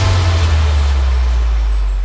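The closing bass hit of a TV intro theme: a deep, sustained low boom under a hissing wash that slowly thins out.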